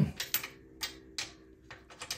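Sharp metallic clinks of a wrench on a bicycle's rear axle nut: one loud knock at the start, then about half a dozen lighter, irregularly spaced clicks.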